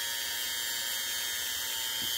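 Small handheld rotary tool running steadily at low speed with a high whine, its spinning bit dressing the ends of small electric-motor brushes.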